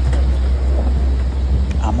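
A steady deep hum with a faint hiss over it; a woman's voice begins near the end.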